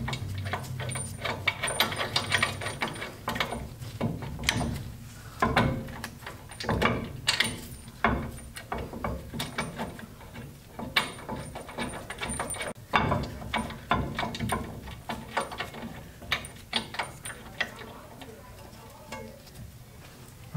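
Ratchet wrench clicking in irregular spurts, with metal clinks, as the M14 mounting bolts of a Brembo brake caliper are run into the steering knuckle.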